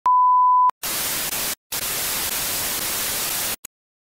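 Television test-card sound effect: a steady, loud high beep of a colour-bar test tone for just over half a second, then the hiss of TV static in two stretches with a brief break about a second and a half in, cutting off suddenly near the end.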